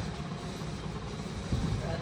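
Steady background noise with no voices, with a little low rumbling, like handling, about one and a half seconds in.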